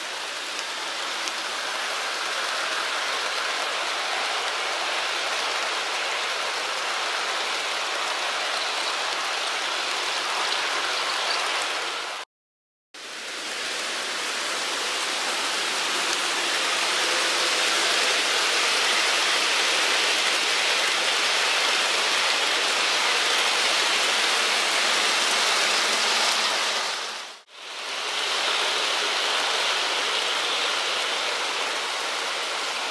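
HO scale model diesel streamliners (Santa Fe F units and PAs) running together on a carpeted oval layout, giving a steady rushing hiss of metal wheels on rail and small motors. The sound cuts out abruptly for about half a second roughly twelve seconds in and dips briefly near the end.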